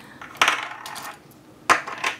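Small charms and dice clinking in a bowl as a hand rummages through them: a sharp clack about half a second in with a short rattle after it, then another click near the end.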